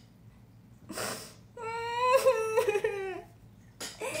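A young woman's high-pitched, wavering whimper-like vocal sound, drawn out for about a second and a half after a short breath about a second in, made in a put-on childlike voice.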